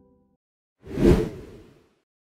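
A single whoosh sound effect, as a pop-up caption appears on screen: it swells quickly about a second in and fades away over most of a second. Before it, the tail of an earlier ringing tone dies out.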